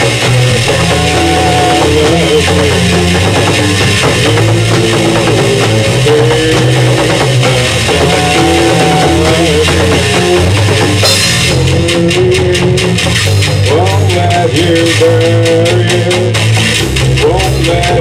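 Live rock band playing loud, with drum kit, guitar and bass together in a stretch without lyrics. About eleven seconds in, the cymbals come in harder with a steady, fast beat.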